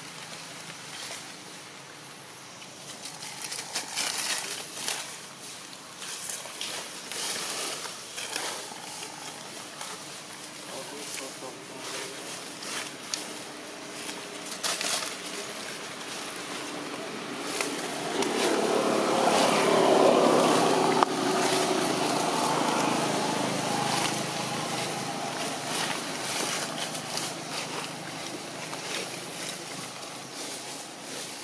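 Dry leaf litter crackling and rustling in short bursts as macaques move over it, with a motor vehicle passing by that swells and fades, loudest about twenty seconds in.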